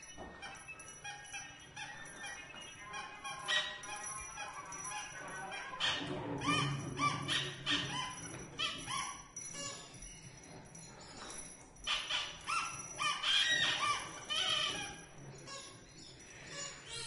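Free-improvised bowed cello: short squeaky high notes that slide up and down in pitch, animal-like, in clusters with brief gaps.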